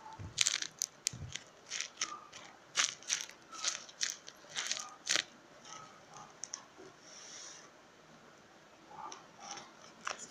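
Paper squishy of paper and tape being squeezed and handled, crinkling in a quick run of short crackles that thin out and turn faint about halfway through.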